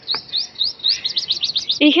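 A small bird singing a run of short, high, rising chirps that come faster and faster.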